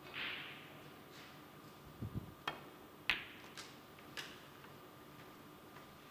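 A snooker shot: the cue strikes the cue ball, then a series of sharp clicks as snooker balls hit each other and the cushions, the loudest about three seconds in and lighter ones following over the next second. A short soft hiss comes right at the start.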